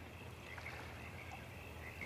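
Faint night-time outdoor ambience: a steady low hum with a soft chirp every second or so.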